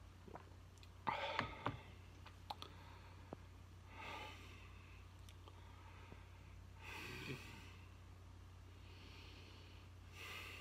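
A man drinking ale: a short cluster of swallowing and small clicks about a second in, then two breathy exhales through the nose, near four and seven seconds in, as he tastes it. A steady low hum runs underneath.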